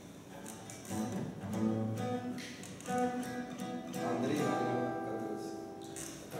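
Steel-string cutaway acoustic guitar played unaccompanied: a few chords strummed, each left to ring, starting about a second in.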